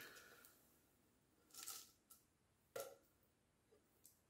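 Near silence with two faint, brief clicks about one and a half and three seconds in: metal tins of 4.5 mm airgun pellets being handled.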